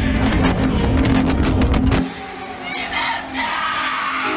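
Deep rumble with rapid rattling, as a TV studio shakes in an earthquake. It cuts off abruptly about halfway through, leaving quieter background sound.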